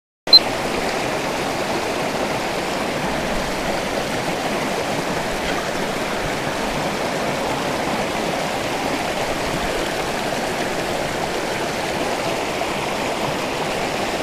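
Shallow rocky stream rushing over stones: a steady, even rush of water that cuts in after a brief dropout at the very start.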